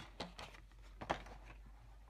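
Quiet handling of a plastic paper-scoring board: a few light clicks and knocks, the sharpest about a second in, over a low steady hum.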